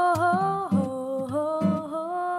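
A woman's voice singing a wordless line of held notes that glide from one pitch to the next, with a Yamaha FX370C acoustic guitar accompanying her softly underneath.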